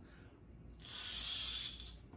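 A freshly cleaned airbrush cartridge blown through by mouth, a breathy hiss of air lasting about a second, which blows out leftover alcohol to dry the part.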